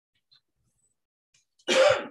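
A single short, loud cough near the end, after near silence.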